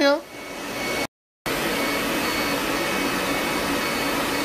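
Steady airy whoosh of a laser hair-removal machine's cooling air blower running, with a few faint steady tones in it. It cuts out for a moment about a second in, then resumes unchanged.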